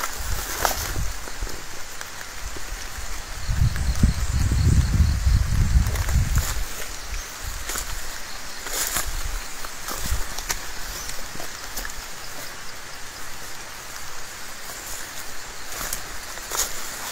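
Leafy undergrowth rustling, with a few sharp twig snaps, as someone pushes through dense brush. A low rumble lasts for about three seconds near the middle.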